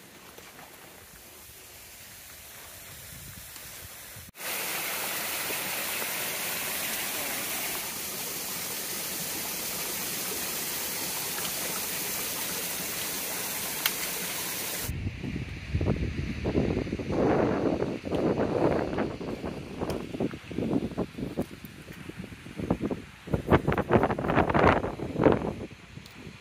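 Rushing water of a mountain stream, a loud steady rush that starts suddenly about four seconds in and stops abruptly about ten seconds later. Before it there is a faint hiss, and after it a run of irregular thuds and rustles.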